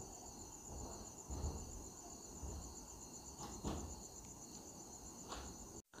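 Faint background insect chirring: a steady high-pitched trill that pulses evenly, with a few soft low bumps.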